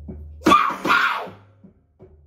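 Beatboxed rhythm over a low bass hum, broken about half a second in by a loud, harsh vocal burst in two parts. The beat then drops out almost to silence near the end.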